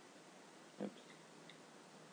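Near silence with faint hiss, broken a little under a second in by one short, low vocal sound like a brief grunt. A few very faint ticks follow.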